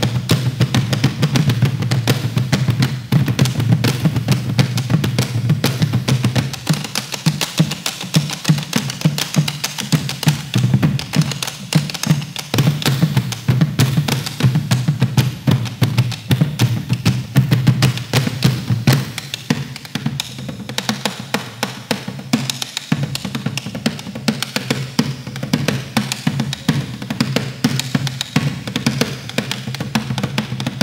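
Several bombos legüeros, the rope-tensioned Argentine folk bass drums with hide heads, played together with sticks in a fast, dense rhythm. The deep boom of the drums thins out and the playing grows somewhat softer about two-thirds of the way through.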